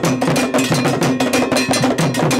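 Traditional Ghanaian drum ensemble: an iron bell struck in a fast, steady rhythm over hand drums, accompanying a dancer.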